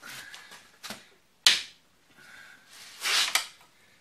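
Hand work on a motorcycle's front fork: scraping and rustling, a sharp knock about one and a half seconds in, and a louder rasping noise near the end.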